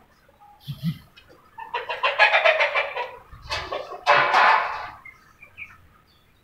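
A chicken giving two loud, drawn-out calls, the first starting just under two seconds in and the second about three and a half seconds in, with a brief low thump shortly before them.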